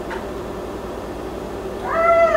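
Low steady hum, then near the end a cat meows: a high held call that then falls in pitch.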